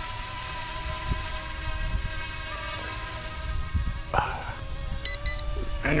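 Electric RC helicopter in flight: its motor and rotors give a steady whine that shifts slightly in pitch, with wind rumbling on the microphone. Two short electronic beeps come about five seconds in.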